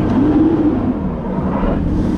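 Car engine pulling away, heard from inside the cabin, with low road rumble. Its hum rises and falls back in the first second, then holds steady.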